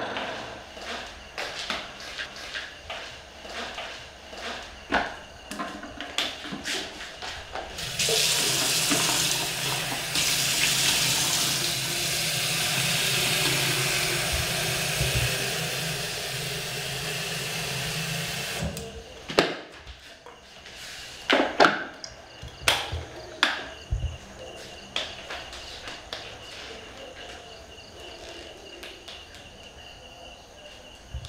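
Kitchen sink tap running into an electric kettle for about ten seconds, then cut off suddenly. A few sharp knocks and clatters follow.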